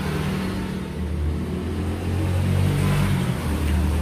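A steady low mechanical hum with a hiss over it, getting slightly louder about halfway through.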